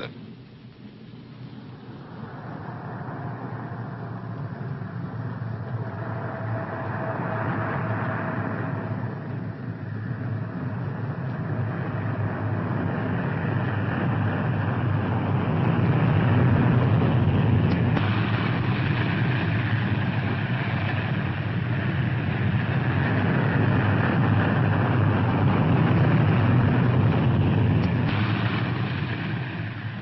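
Propeller aircraft piston engines droning, swelling from faint to loud over the first fifteen seconds or so with a brief dip about ten seconds in, then holding steady.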